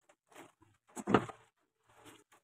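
Leaves and stems brushing and rustling against a handheld camera as it is pushed through plants: a few short rustles, the loudest about a second in.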